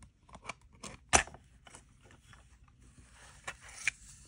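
Clear plastic cassette case being handled and opened and the cassette tape taken out: a run of small plastic clicks and rattles, with one sharp snap about a second in.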